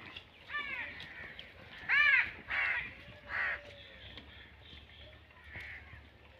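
A bird cawing: four short, harsh calls in the first few seconds, the loudest about two seconds in, then a few fainter ones.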